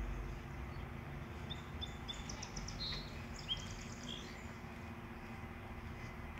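A small songbird singing a short phrase of quick high chirps and a brief trill, from about a second and a half in to about four seconds in, over a steady low outdoor rumble.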